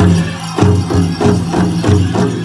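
Powwow drum struck in a steady beat, about three strokes in two seconds, each stroke ringing on, with the jingle of dancers' bells.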